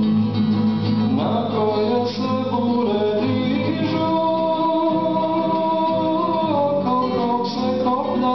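A man singing a spiritual song, accompanying himself on a classical guitar, with long held notes in the vocal line.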